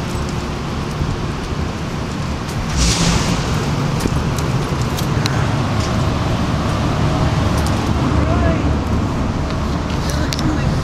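Outdoor street noise: a steady low rumble of wind on a handheld camera's microphone with traffic in the background, and a short hiss about three seconds in.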